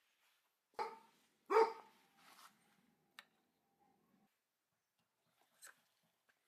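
A dog barking twice in quick succession about a second in, with a fainter sound just after and a short sharp click around three seconds.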